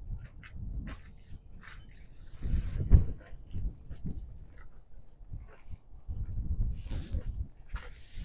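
Wind buffeting the microphone in an uneven low rumble, with footsteps and scattered small knocks on a sailboat deck; the loudest thump comes about three seconds in.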